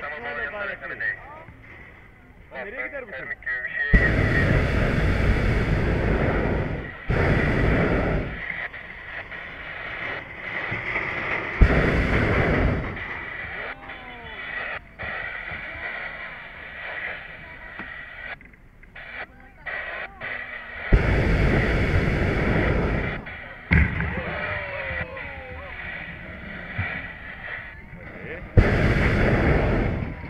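Hot-air balloon propane burner firing in five blasts: a loud, steady roar lasting from under a second to about three seconds each, cutting in and out abruptly, as the balloon comes in low to land.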